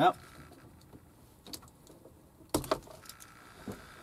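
A plastic wiring-harness connector being unplugged and pulled out from behind the dash: a few faint ticks, then a quick cluster of sharp plastic clicks and rattles about two and a half seconds in, and one more click near the end.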